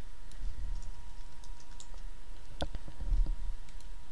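Computer keyboard being typed on: a scattering of light keystrokes, with one louder click about two and a half seconds in.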